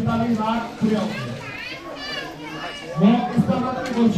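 Close, indistinct talking: a man's voice and a child's higher voice among it.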